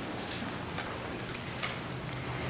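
A few light, irregular clicks and taps of communion vessels being handled and set down on a wooden altar, over quiet room tone.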